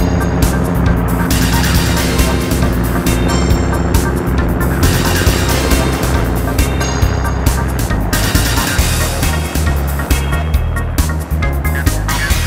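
Background music with a steady beat, over the running engine and rotor of a Robinson R44 helicopter lifting off and climbing away.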